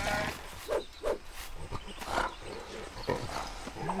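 A cartoon polar bear's wordless vocal grunts and growls, several short ones one after another.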